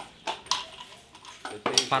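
Only speech: short spoken fragments with quiet gaps between them.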